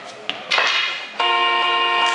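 A short burst of shouting and cheering from onlookers. Then, just over a second in, a steady electronic signal tone of several pitches sounds for about a second and cuts off: a weightlifting 'down' signal, telling the lifter the bar is held and he may lower it.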